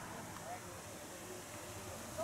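Faint open-air background with a brief distant voice calling about half a second in.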